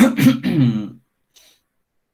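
A man coughing and clearing his throat, one rough burst lasting about a second, then quiet apart from a faint breath.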